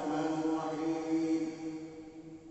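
A man's voice chanting one long held note over a public-address system, fading out about one and a half seconds in.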